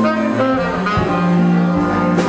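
Live blues band playing: a saxophone holds sustained notes over electric guitar, bass and drums, with a drum hit about a second in.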